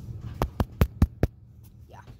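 Five quick, sharp taps in a row, about five a second, each one loud and short.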